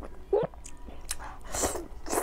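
Close-miked eating sounds: wet chewing and slurping of soft food, picked up by a lapel mic. There is a short hum about half a second in, and the loudest wet bursts come near the end.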